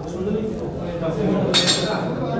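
People talking in the background, with a short, bright metallic clink about three-quarters of the way in.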